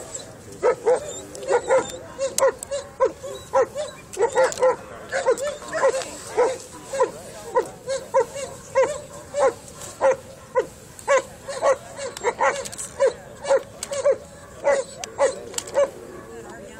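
German Shepherd barking repeatedly at a protection-work helper holding a bite sleeve, short sharp barks at about two a second with brief pauses between runs.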